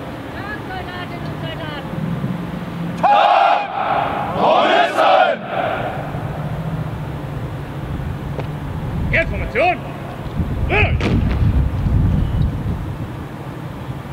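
Loud, drawn-out shouted voice calls of the kind used for military drill commands, one group about three to five seconds in and another around nine to eleven seconds, over a steady low rumble.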